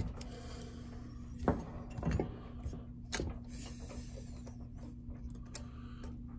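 Small clicks and knocks from handling a chainsaw powerhead, with a degree wheel on a drill chuck fitted to its crankshaft, as the crank is set to find top dead center. They come about four times, over a steady low electrical hum.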